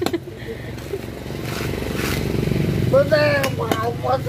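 A motorcycle engine running, growing steadily louder over a couple of seconds as it comes close. Sharp knife strikes on coconut husk near the start and near the end.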